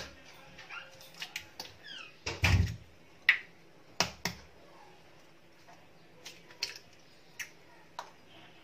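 Eggs being cracked one after another into a plastic mixing bowl: a series of sharp taps and knocks as the shells are broken, the loudest a dull thump about two and a half seconds in.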